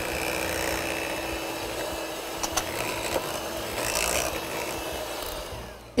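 Electric hand mixer (Philips, 300 W) running steadily, its beaters churning thick cream-cheese batter in a glass bowl. The sound dies away just before the end.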